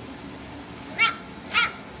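Four-week-old standard schnauzer puppy giving two short, high-pitched yelps about half a second apart, each falling in pitch.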